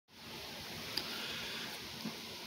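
Faint, steady hiss of outdoor background noise, with a single small click about a second in.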